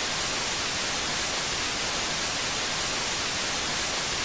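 Television static sound effect: a steady hiss of white noise.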